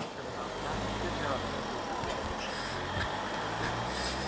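Low, steady rumble of a motor vehicle's engine in a narrow street, building about half a second in, with indistinct voices of passers-by.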